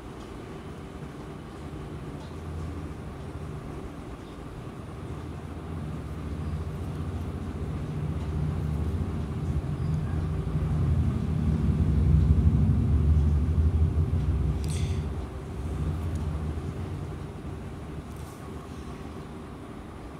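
Low rumble of a passing vehicle, swelling to its loudest a little after the middle and then fading away.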